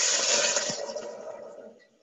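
Water being poured from a glass measuring cup into a stainless steel saucepan on the stove, a steady rush that tapers off and stops near the end.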